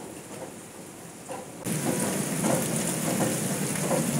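Heavy rain falling as a loud, steady hiss that starts abruptly about a second and a half in; before it, only faint murmuring.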